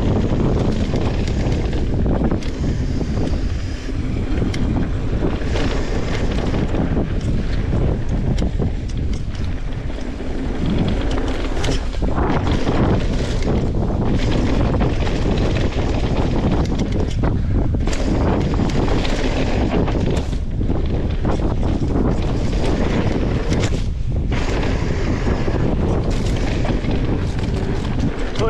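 Wind rushing over an action-camera microphone on a mountain bike riding fast down a dirt singletrack, mixed with tyre rumble and frequent short clicks and rattles from the bike over bumps.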